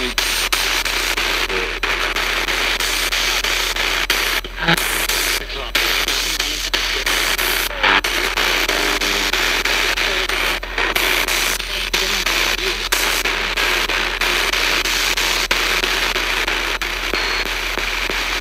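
A spirit box, a radio scanning rapidly through stations, giving out continuous loud static. The static is broken many times a second by short cut-outs as it jumps from station to station, with brief snatches of broadcast voices. A steady low mains hum runs underneath.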